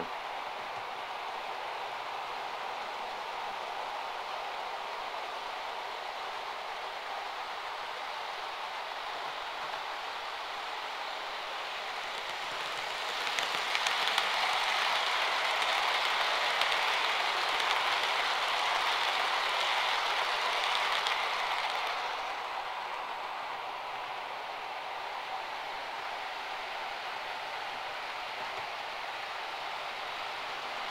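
Model railway train, a Class 67 locomotive hauling a rake of eight coaches, running on the layout track: a steady rolling, hissing rumble of wheels on rail. It grows louder about 13 seconds in as the coaches pass close by, then drops back about 22 seconds in.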